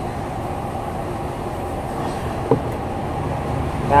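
Steady low background rumble, with one short click about two and a half seconds in from the kick-starter cover and lever being handled.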